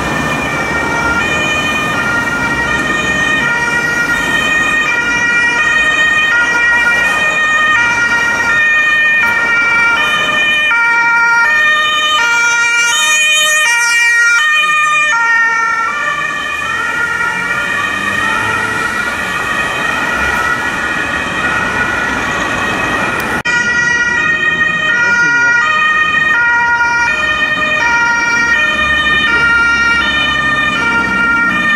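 German ambulance two-tone siren (Martinshorn) sounding over traffic noise, switching between a high and a low tone about every half second. There is a sudden cut about three-quarters of the way through, and the siren carries on after it.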